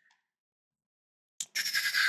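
Dead silence, then about one and a half seconds in a small click and a man's breath, close to the microphone.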